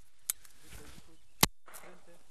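Two shotgun shots about a second apart, the first fainter, the second loud and sharp.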